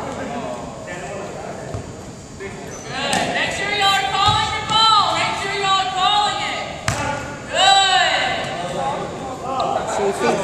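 Volleyball struck in forearm passes and bouncing on a hardwood gym floor, a few sharp echoing thuds in a large hall, with indistinct voices throughout.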